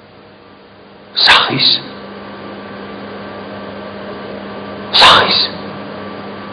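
Two short, loud breathy bursts from a man at a microphone, about four seconds apart, each in two quick parts, over a steady low hum.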